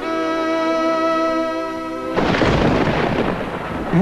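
A sustained chord of film background music, broken off about halfway through by a sudden clap of thunder that rumbles on.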